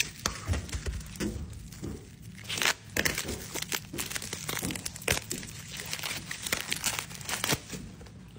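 Plastic bubble wrap crinkling and crackling in the hands as a taped-up graded card slab is unwrapped, with the tape pulled loose; an uneven stream of sharp crackles.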